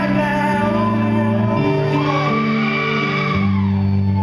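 Live rock band: a male lead singer belting a long sung note that rises and then falls, over sustained electric bass and guitar chords.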